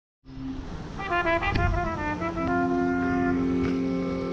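Live jazz: a quick run of notes, then a long held chord that closes the piece.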